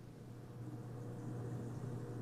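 Faint, steady low hum with an even hiss from an open audio line on a video call, fading in over the first half second.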